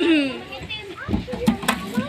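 Young voices calling out and chattering, with a few sharp knocks in the second half.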